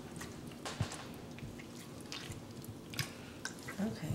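Faint, scattered soft squishes and drips: warm fresh mozzarella being handled in a bowl of cold water.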